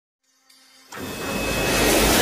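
After near silence, a loud rushing swell with a deep rumble underneath starts suddenly about a second in and builds toward the end.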